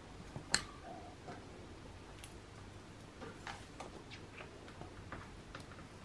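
Cockatiels' beaks picking at a seed-stuffed broccoli stalk and bell pepper on wood-shaving litter: faint, irregular clicks and rustles, the sharpest about half a second in.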